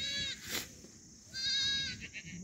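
Two quavering bleats from the camp's sheep and goats, one at the start and a longer one about a second and a half in, with a single sharp crack, likely from the campfire, about half a second in.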